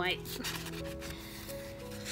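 Paper pages of a traveler's notebook rustling as they are turned, over soft background music with long held notes.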